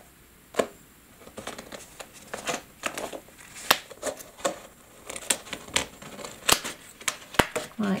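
A stiff clear acetate sheet being handled and pressed into a cylinder onto double-sided tape: irregular crinkles and sharp clicks and crackles of the plastic.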